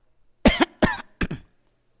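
A man coughing three times in quick succession, starting about half a second in.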